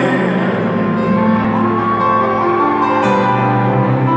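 Live arena concert music led by grand piano playing a slow, sustained opening, with held notes ringing under it, recorded from far up in the stands.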